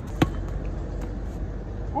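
Steady low rumble of outdoor background noise, with one sharp click about a quarter second in.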